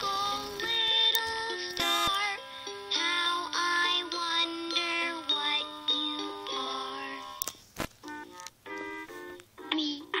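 LeapFrog My Pal Violet plush toy playing a children's song through its small speaker: an electronic tune of stepped notes with a sung voice, thinning to a few quieter short notes near the end.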